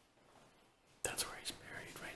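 A person whispering, starting suddenly about a second in after a quiet moment.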